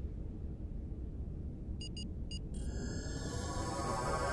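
Star Trek transporter effect over a low steady rumble: three quick electronic chirps about two seconds in, then a shimmering chorus of ringing tones swells up in the last second and a half as the beam takes hold.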